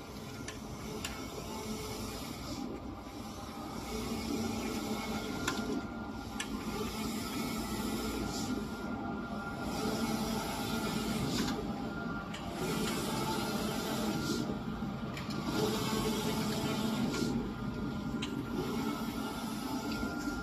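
Locor 1840 large-format sublimation printer running a print: a steady mechanical hum with a whirring pass that comes round about every three seconds, and a few light clicks.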